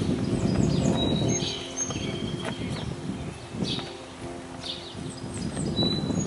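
Outdoor ambience: wind rumbling on the microphone, rising and falling, with birds chirping high above it and faint steady tones in the background.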